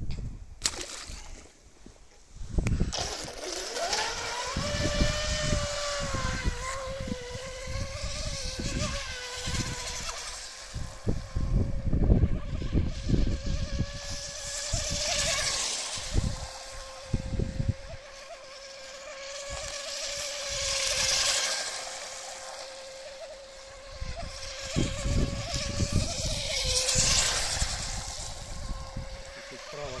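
The brushless electric motor of a 3D-printed RC racing boat (a Tenshock Viper 1515 driving a flexible shaft) whines as the boat runs at speed. The pitch rises as it sets off about three seconds in, then holds at a steady high note that wavers slightly, swelling and fading as the boat moves about.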